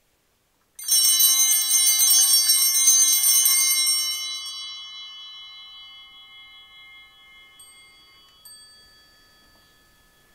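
A cluster of altar (sanctus) bells shaken for about three seconds, then left ringing and slowly fading, with a couple of faint clinks near the end. They are rung at the consecration and elevation of the bread in a Eucharist.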